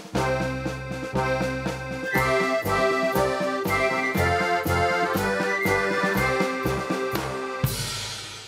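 Accordion playing a bouncy tune over a steady bass drum beat, as in a one-man band, with a louder drum hit near the end.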